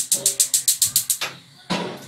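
A spoon stirring onions frying in a pan on the stove: a fast, even run of sharp scraping strokes, about eight a second, for just over a second, then a single short scrape near the end.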